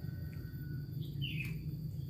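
A single short bird chirp, falling slightly in pitch, a little over a second in, over a steady low background hum, with a faint click just after.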